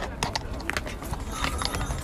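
Hooves of a carriage horse clopping irregularly on the paving as it stands and shifts, with a low wind rumble on the microphone.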